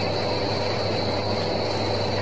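Steady background hum and hiss with no distinct events: room tone.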